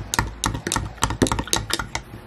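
A spoon stirring a protein drink in a glass jar, clinking against the glass in a rapid, irregular run of sharp clicks.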